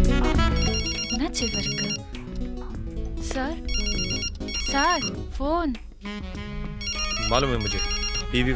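A telephone ringtone ringing in repeated bursts of high electronic tones, over music.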